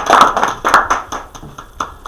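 Small audience's applause dying away: dense hand claps thin out to a few scattered claps, with a last single clap near the end.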